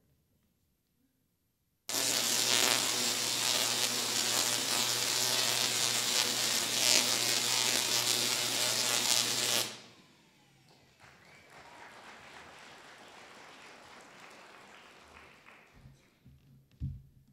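Tesla coil firing: a loud, steady electric buzz of sparks that starts abruptly about two seconds in, runs for about eight seconds and cuts off suddenly. A much fainter even noise follows it.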